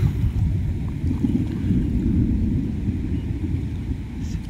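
Wind buffeting the microphone: a loud, uneven low rumble with little else above it.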